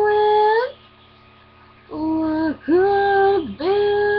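A young woman singing a pop-country ballad unaccompanied. A long held note ends less than a second in, then after a pause of about a second she sings the next phrase as three held notes.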